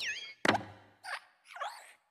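Cartoon sound effects of an animated hopping desk lamp: a squeaky springy glide, then a thud about half a second in as it lands on and squashes the letter, then two short squeaks of its spring joints.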